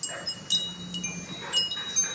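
Small chimes on a homemade hanging baby mobile tinkling as it sways: a string of light strikes, each leaving a high ringing note that hangs on briefly.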